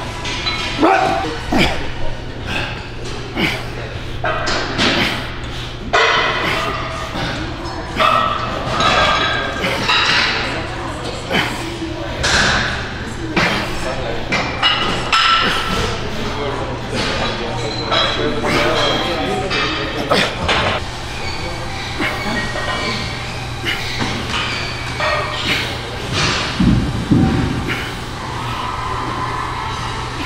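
Busy weight-room sound: voices and shouts over repeated sharp clanks and thuds of metal weights, with a steady low hum underneath. A heavier thud comes near the end.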